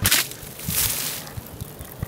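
Water thrown out of a basin, splashing through the air: a sudden rush right at the start, then a longer hissing spray around the middle.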